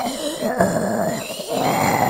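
Horror-style intro sound effect: a low, creature-like voice that dips about a second and a half in and then comes back as a laugh.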